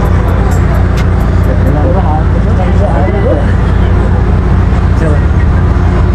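A steady, loud low mechanical rumble with faint voices in the background.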